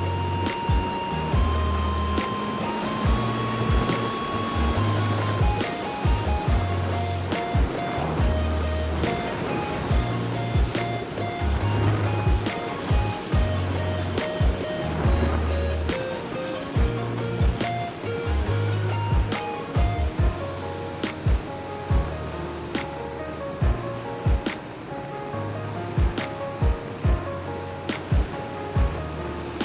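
Background music with a steady drum beat and bass line.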